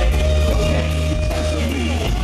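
Live rock band playing: electric guitar over bass and drums, with a long held note that bends down near the end.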